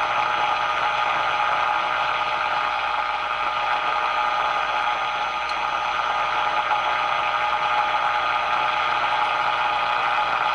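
Steady static hiss from an AM radio's speaker during a 455 kc IF alignment, with faint steady tones in it. The RF gain is turned down so the AVC stays out, which leaves a lot of noise around the signal generator's modulated test signal.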